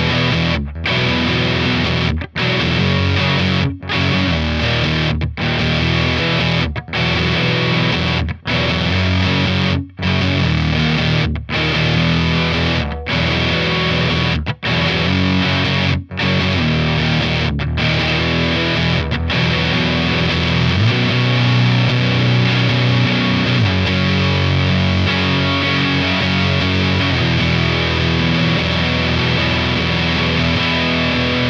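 Electric guitar, a Fender Telecaster, played through the JPTR FX Jive Reel Saturator drive pedal into a Fender Twin Reverb-style amp simulation and an Orange 2x12 cab impulse, giving a noisy, fuzzy distorted tone. It plays a riff with brief stops about every second and a half, then keeps going without pauses over the second half, with a heavy held low note about two-thirds of the way through.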